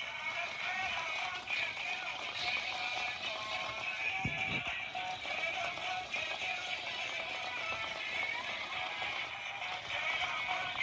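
Gemmy Crazy Shakers animatronic plush bunny playing a song with singing through its small built-in speaker, a thin sound with little bass, as it shakes and dances. A brief low thump comes about four seconds in.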